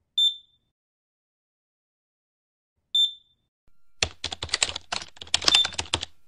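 Logo sound effects: two short high electronic beeps about three seconds apart, then about three seconds of rapid clicking like keyboard typing.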